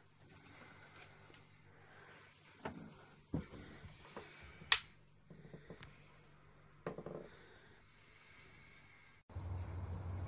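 A quiet room with a few faint scattered clicks and knocks, the sharpest a single click almost five seconds in. Near the end the sound cuts suddenly to a steady low rumble of wind on the microphone outdoors.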